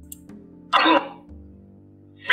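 Soft ambient background music with one short, raspy burst of vocal-like noise about three-quarters of a second in, lasting about a third of a second. The burst is a metafonia (EVP) recording, presented as a voice saying "Tu sei come figlia per me!".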